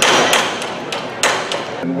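Hammer blows on the timber launching blocking under a steel tug hull: four sharp strikes with a ringing edge, about a third of a second apart, stopping a little past halfway.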